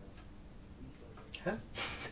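Quiet room tone for over a second, then a man's brief vocal sound and a short breathy exhale or laugh near the end.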